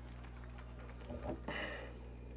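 Quiet background with a steady low hum and a faint short sound about one and a half seconds in.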